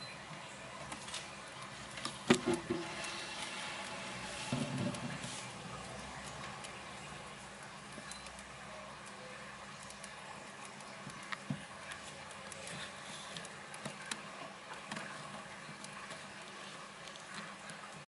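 Fat-tailed gerbils rustling and scratching through dry hay bedding, with many small clicks. There is a sharper click about two seconds in and a duller thump near five seconds.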